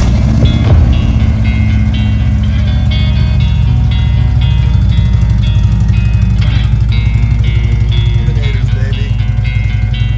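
A 2009 Harley-Davidson Ultra Classic's V-twin runs steadily through Vance & Hines Eliminator mufflers, a deep, even pulse. Guitar background music plays over it.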